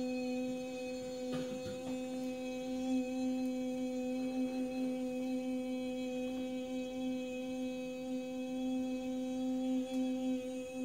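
A woman's voice holding one long, steady sung tone at a single low-middle pitch with a slight waver. This is the healer's toning, which she says is used to break up blocked tissue.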